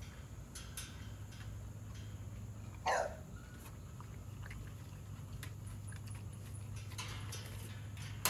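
A bully-breed dog being dosed by oral syringe, with one short dog noise about three seconds in, a few small clicks and a steady low hum.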